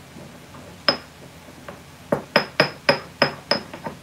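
Pestle pounding whole dried thyme leaves in a mortar to break them down: one sharp knock about a second in, then a steady run of knocks, about three a second, from halfway through.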